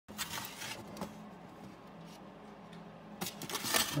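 Light taps and scrapes of a hand moving a black plastic hide inside a plastic tub, with a few clicks near the start and a cluster near the end, over a low steady hum.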